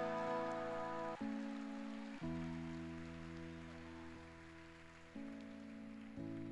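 Soft sustained keyboard pad chords, each held steady, then changing chord about a second in, again near two seconds and near the end, growing slowly quieter in between.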